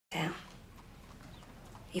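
A woman's voice sounds briefly at the very start, then quiet room tone until she starts speaking again at the end.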